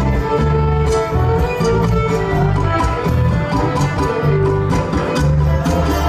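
Live string band playing an instrumental break in a country song, with a fiddle taking the lead melody over acoustic guitar and steady low bass notes.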